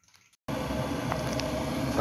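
Electric kettle heating water, a steady rushing hum that starts suddenly about half a second in.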